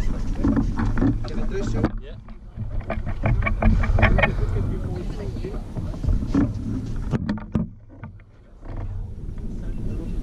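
Wind rumbling on the microphone, with people talking quietly underneath; the rumble drops away briefly about two seconds in and again near the end.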